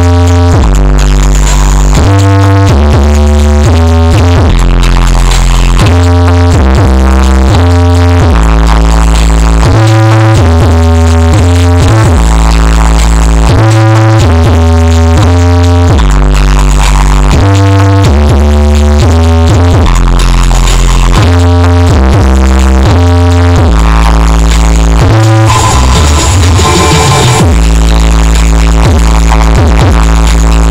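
Electronic dance music played very loud through a 'sound horeg' rig of 20 stacked subwoofers with line-array tops during a sound check, dominated by a heavy, pounding bass line that changes note every half second or so. A short noisy break rises through the mix about 26 seconds in.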